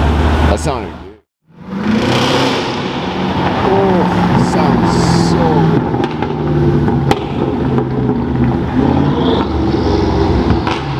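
A BMW X6's engine runs at low speed as the car rolls slowly along a street, a steady low drone. The sound drops out for a moment about a second in. People talk in the background.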